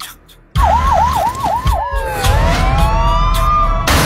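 A siren sounds over a heavy low rumble. It starts with a fast yelp of about five falling sweeps, then turns into slower, overlapping wails that glide up and down. Near the end it cuts off suddenly into a loud burst of noise.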